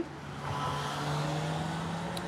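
A road vehicle going by on the street, its engine a steady low hum that swells about half a second in.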